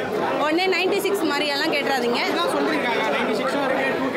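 A woman talking, with crowd chatter behind her.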